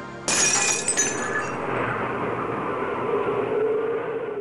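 Glass shattering: a sudden crash about a third of a second in, a second sharp hit a moment later, then a dense noisy tail that carries on to the end.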